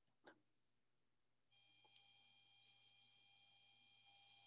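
Near silence: room tone, with one faint click shortly after the start and a faint steady high whine that sets in about a second and a half in.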